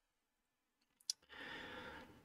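Near silence, then a short mouth click about a second in, followed by a man's audible breath in the last second.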